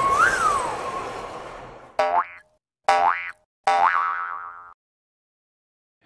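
A rushing whoosh with a whistle that rises and falls in pitch fades away over the first two seconds. Then come three short springy cartoon boings, each sliding upward in pitch, the third one longer, followed by silence.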